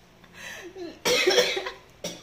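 A man coughing: a smaller cough about half a second in, then a louder, harsher cough about a second in.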